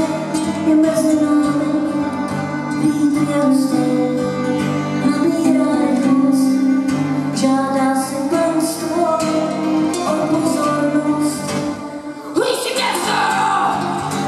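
Live acoustic band playing a folk arrangement, with cello and acoustic guitars over light drums. Near the end a rising slide leads into a fuller, brighter passage.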